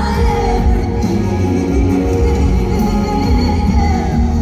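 Female vocalist singing a power ballad live with band accompaniment, amplified through a concert PA and recorded from the audience.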